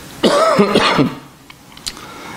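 A man clearing his throat once, lasting under a second, followed by a couple of small clicks.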